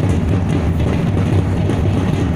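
Many large barrel drums played together in a loud, dense, continuous rumble of strokes.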